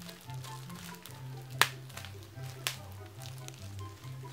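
Clear plastic wrapping crinkling and tearing as it is pulled off a new eyeshadow palette, with a sharp snap about one and a half seconds in and a smaller one about a second later. Soft background music plays under it.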